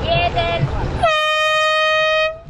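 Hand-held canned air horn: two short toots, then a long steady blast starting about a second in, signalling the start of a catamaran race.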